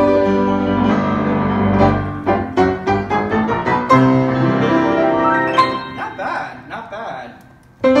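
A freshly tuned Hallet, Davis & Co UP121S studio upright piano being played: held chords, then a run of struck notes. The sound dies away almost to silence shortly before the end.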